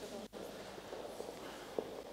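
Quiet room noise with faint murmured voices in the background, and a single short tap near the end.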